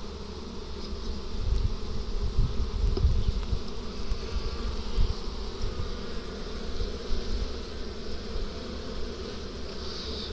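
A colony of honeybees buzzing steadily around an open hive box, with uneven bursts of low rumble in the first few seconds.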